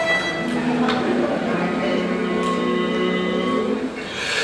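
A single steady note held for about three seconds, the starting pitch sounded before a barbershop quartet begins its song.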